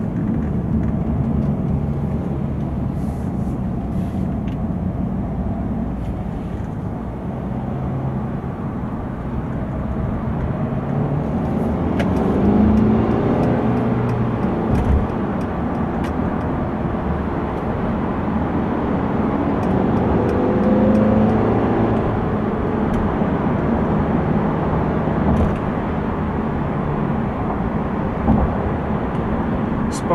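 The four-cylinder diesel of a 2015 Mercedes C220d, heard from inside the cabin while driving in city traffic, over steady road and tyre noise. The engine note swells and its pitch rises and falls twice, about twelve and twenty seconds in, as the car pulls away and shifts.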